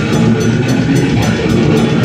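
Live heavy metal band playing loud, with distorted guitars, bass and drums, heard from the crowd.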